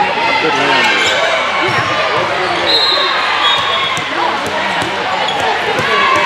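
Murmur of many overlapping voices in a gym hall, with volleyballs bouncing now and then on the hard court floor.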